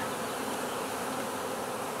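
A swarm of honey bees buzzing steadily as the bees are shaken into a box and take to the air.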